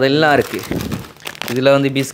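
Plastic food packets and a woven plastic sack rustling as they are handled, from about half a second to a second and a half in, with a voice talking before and after.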